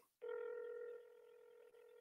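A faint telephone tone: one steady beep lasting under a second, starting a moment in, with the narrow sound of a phone line.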